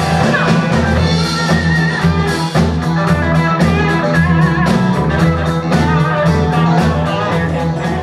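Funk band playing live: drums keeping a steady beat with bass and electric guitar, and a female voice singing over them.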